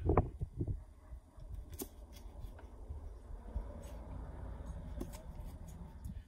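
Playing cards being shifted and rearranged in the hands, a few light clicks and rustles, over a low steady rumble of wind noise on the microphone.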